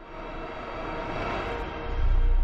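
Logo-sting sound effect: a swelling whoosh that builds steadily, with a few faint held tones inside it, leading into a deep bass hit at the very end.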